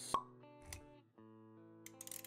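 Intro music for an animated logo. A sharp pop comes just after the start and is the loudest sound. A softer pop with a low thump follows less than a second later, then held musical notes.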